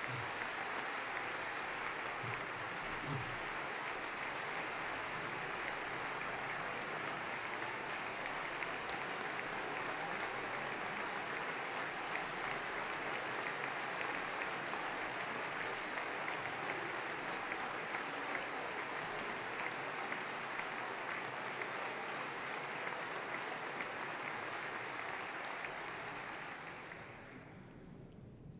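A large assembly of members of parliament applauding steadily for nearly half a minute, the clapping dying away near the end.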